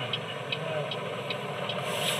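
Light regular ticking, about two or three ticks a second, over a steady hiss.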